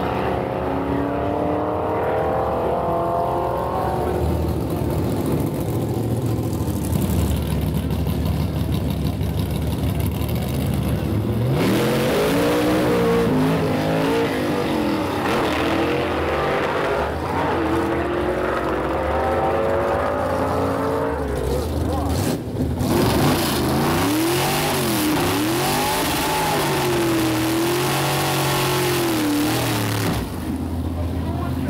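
Gasser drag cars' engines at full throttle on a drag strip, their pitch climbing as the cars launch and pull away. Later the engines are revved up and down over and over, as in a burnout.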